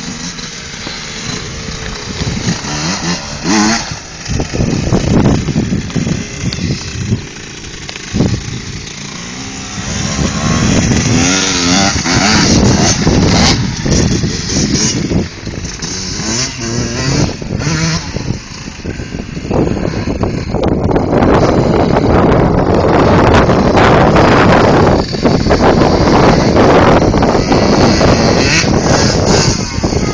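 Dirt bike engines revving up and down as the bikes ride around the field, getting louder about twenty seconds in as one comes closer.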